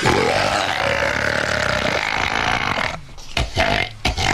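A long, drawn-out human burp lasting about three seconds, starting with a falling pitch. A few short low thumps follow near the end.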